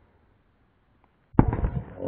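A sudden loud knock about a second and a third in as a rubber ball strikes the phone that is filming, followed by a rough rattling stretch as the phone is jostled. The audio is slowed down by the slow-motion recording.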